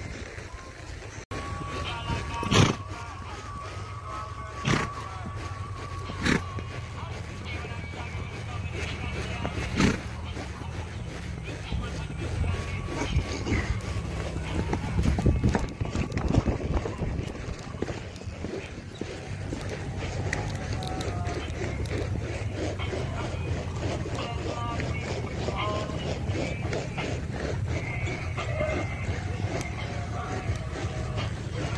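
Indistinct voices and music under a low wind rumble on a handheld phone's microphone, with a few sharp knocks in the first ten seconds.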